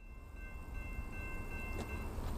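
Freight train cars rolling past at a grade crossing: a low rumble that grows over the first second, with a steady high-pitched ringing tone over it that stops near the end, and a couple of sharp clicks.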